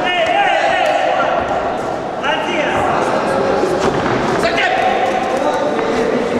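Kickboxing gloves landing punches in an exchange, a run of dull thuds and slaps, under continuous shouting from coaches and spectators.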